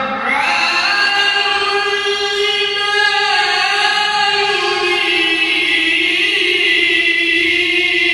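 A man's solo melodic Qur'an recitation (tilawah), one long unbroken phrase that sweeps up in pitch just after the start and is then held on long, ornamented notes through a microphone.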